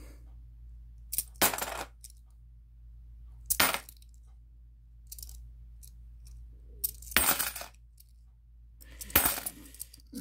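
Korean 500-won coins clinking against each other as they are handled in a small stack, in four short bursts of metallic clinks spread a couple of seconds apart.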